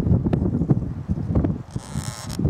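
Loose shale fragments crunching and clattering against each other as they are handled, in an irregular run of small clicks over a low rustle.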